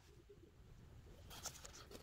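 Near silence, with faint scraping and rustling in the second half as packaging is handled.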